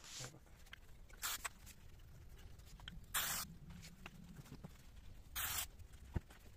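Three short hisses from an aerosol can of brake cleaner sprayed onto a throttle body, about two seconds apart, with faint handling clicks between.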